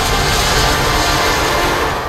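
A loud, steady rushing noise with music under it from an animated short film's soundtrack, a dramatic action sound effect, starting to fade near the end.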